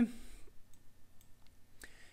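Faint, scattered clicks of a computer mouse as the on-screen map is zoomed out.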